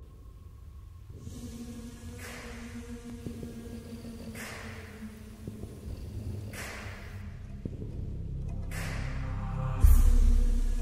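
Dark, sustained trailer score: a low drone with two steady held tones, with slow breathing about every two seconds over it. It builds gradually to a loud low boom near the end.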